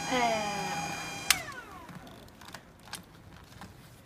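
Cell phone jammer whining steadily from its cooling fan until a click about a second in switches it off. The whine then falls away in pitch over half a second as the fan spins down.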